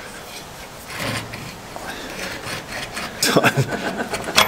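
Rubber bush of a Toyota Prado 150's front lower control arm being twisted back and forth by hand so that its rusty sleeve works loose: a quiet rubbing. Laughter near the end.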